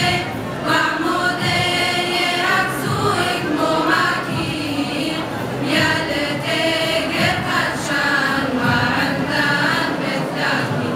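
Large Syriac church choir, mostly young female voices, singing in harmony in long held notes.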